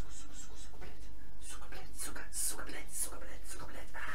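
Quiet, half-whispered speech with hissing 's' sounds, too faint for words to be made out, over a steady low electrical hum.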